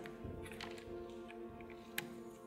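Soft background music with sustained tones, over a few faint small clicks as shock absorbers are fitted back onto an XRAY X4 RC car's suspension arms, with one sharper click near the end.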